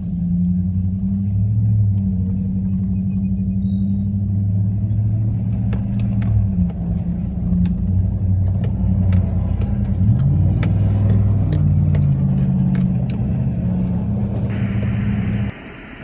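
Full-size Z71 pickup truck in four-wheel drive high, heard from inside the cab while driving slowly over soft beach sand: a steady low engine rumble whose pitch rises and falls, with scattered light clicks in the middle. Near the end a hiss comes up, and then the sound cuts off suddenly.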